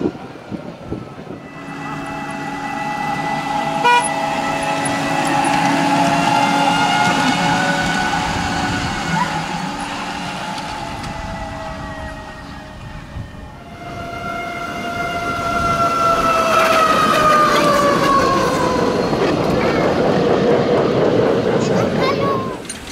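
Miniature railway locomotive's chime whistle blowing two long blasts, each a chord of several tones. The first holds a steady pitch for about twelve seconds; after a short break the second slides down in pitch.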